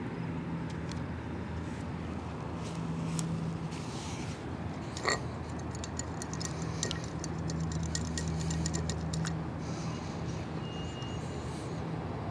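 Steady low hum of a vehicle engine running nearby, with scattered small clicks and ticks over it, one sharper click about halfway through.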